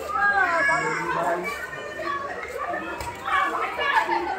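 Lively overlapping voices of a small group chattering and calling out to one another, many of them high-pitched.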